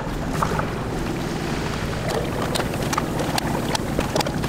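Hot oil in a deep fryer sizzling, with scattered sharp crackles and pops over a steady low hum.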